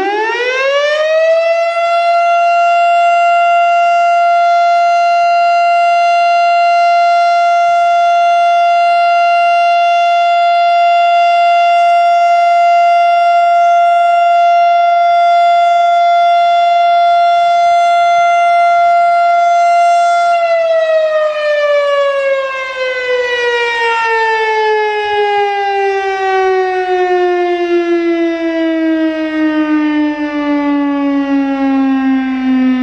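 Federal Signal STH-10 outdoor warning siren finishing its wind-up, then holding one steady tone for about twenty seconds. About twenty seconds in it begins a long wind-down, the pitch sliding slowly lower as the rotor coasts on what the recordist calls good bearings.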